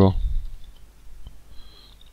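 A few faint keystrokes on a computer keyboard as a short word is typed.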